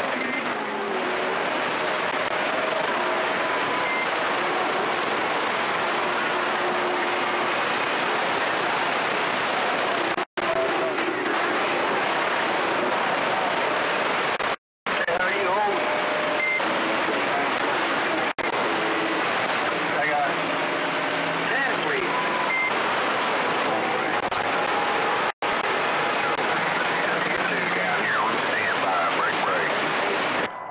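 CB radio receiver putting out a steady rush of static, with faint garbled voices and short whistles buried in it. The static cuts out abruptly and briefly four times.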